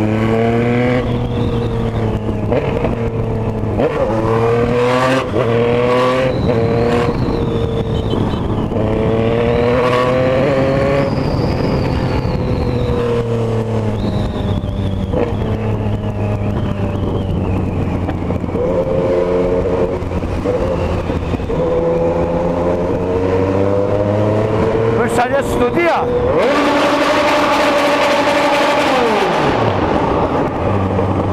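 Yamaha MT-09's three-cylinder engine ridden through traffic, its revs climbing and dropping again and again as it accelerates and changes gear. Near the end a loud rushing sound joins in as the bike enters a tunnel.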